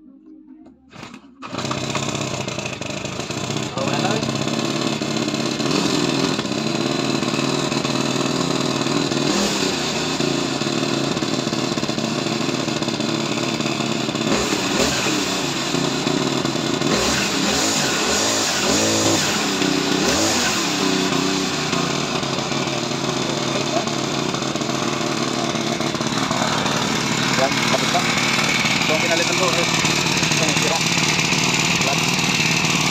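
A brush cutter's small two-stroke engine catches about a second and a half in and keeps running steadily and loudly.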